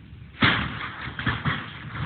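A sudden loud burst of noise about half a second in, followed by a rough rushing noise with several thumps.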